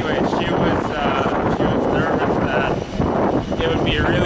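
Voices talking in snatches over a steady rush of wind noise on the microphone.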